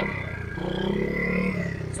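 A 70cc pit bike's single-cylinder engine idling, with a light rev about half a second in that drops back a second later.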